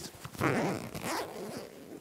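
Jacket zipper pulled down in one stroke, starting about half a second in, with fabric rustling as the jacket is pulled open.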